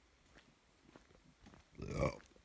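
Faint footsteps on a leaf-littered dirt path, about two steps a second, then near the end a short, loud, low grunt-like vocal sound.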